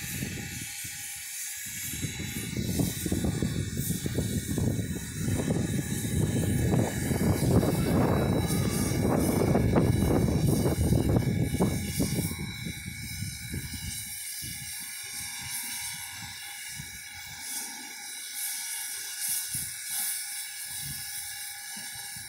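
Two standing steam locomotives hissing steam. A louder low, rushing rumble swells from about two seconds in and fades after about thirteen seconds.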